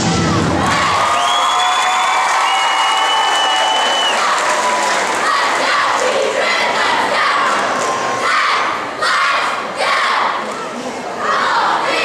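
The routine's backing music cuts off about half a second in, and a crowd of girls cheers and screams. From about halfway through, the cheerleading squad shouts a chant in unison, in short rhythmic phrases.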